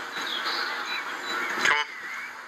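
Birds calling over a steady outdoor hiss, with one short, sharper call near the end.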